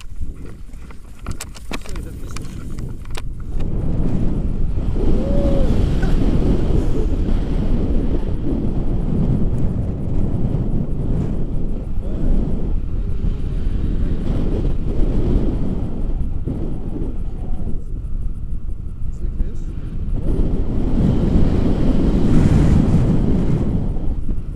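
Wind rushing over the camera microphone on a tandem paraglider in flight just after launch: a steady, loud, low rumble that swells about three and a half seconds in and holds, rising again near the end.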